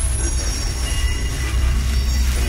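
Dark psytrance in a DJ mix: the kick drum drops out and a dense, noisy, rumbling texture takes over, over a continuous deep bass with thin high tones held above it.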